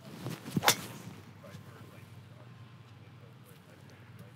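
A golf driver, a Titleist TSR, swung at full speed: a brief whoosh of the club through the air, then a single sharp, loud crack as the clubhead strikes the ball, about two-thirds of a second in.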